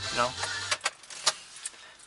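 A few light clicks and taps inside a car, after a short spoken phrase.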